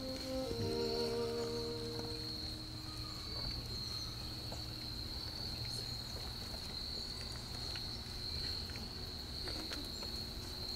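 Processional music fades out over the first two seconds, leaving a steady, high insect chirring, with faint scattered clicks and rustles.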